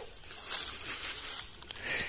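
Quiet outdoor background with faint rustling and a few small clicks.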